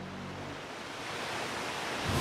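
A swelling whoosh of noise, a transition sound effect, rising steadily in loudness and brightness. A held piano chord fades out in the first half-second.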